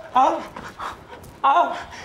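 A man's voice calling out twice, two short calls about a second and a half apart, with quieter breathy sound between them.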